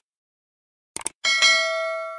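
Subscribe-button sound effect: a quick double mouse click about a second in, then a bell chime that rings on and slowly fades.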